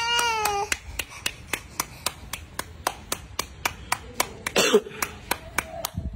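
An infant's wailing cry, high and falling slightly in pitch, ends within the first second. Then comes a steady run of sharp clicks, about three or four a second, with a short vocal outburst about four and a half seconds in.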